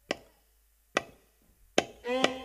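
Three sharp wooden clicks, evenly spaced about a second apart, as drumsticks are struck together to count the band in. The music comes in straight after the third click.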